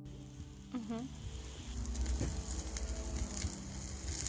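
Meat skewers sizzling over hot charcoal on a kettle grill: a steady hiss with many small crackles and pops. A short warbling sound is heard just before a second in.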